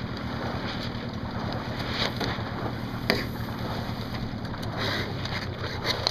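Wind buffeting the microphone over open water, with a low steady hum underneath and a few short knocks, the sharpest about halfway through.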